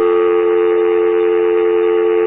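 Telephone dial tone: the steady two-note hum of a North American phone line, heard over the air. The call to the office has ended with the other end hanging up.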